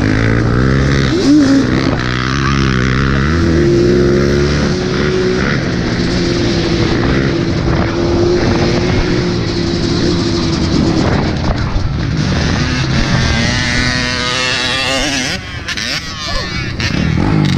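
Off-road vehicle engine running under the rider, revving up twice in the first few seconds and then holding a steady pitch while cruising. It revs up again near the end.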